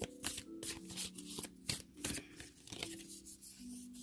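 A deck of oracle cards being shuffled and handled by hand: an irregular run of sharp card slaps and clicks, over soft background music with long held notes.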